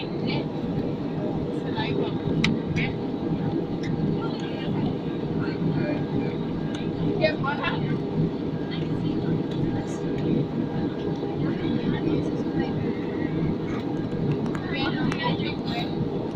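Steady cabin noise of an Airbus A320-family airliner in cruise: a dense, even low rush of engine and airflow. Faint passenger voices come and go over it.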